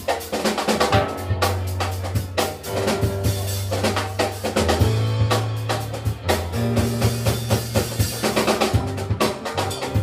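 Live salsa band playing a drum and percussion-led passage, with dense rapid drum strokes over a walking electric bass line.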